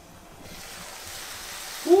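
Shrimp and diced vegetables sizzling in a frying pan, a steady hiss that comes up about half a second in. Near the end a man's voice shouts 'Woo!'.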